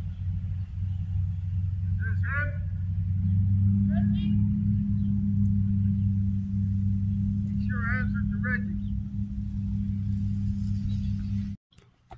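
A steady low mechanical hum, like an idling engine, with a few brief, faint, warbling, voice-like sounds over it. The hum cuts off suddenly shortly before the end.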